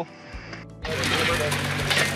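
A short laugh, then from a sudden cut just under a second in, a high banker's gas-engine water pump running steadily over loud rushing, splashing water.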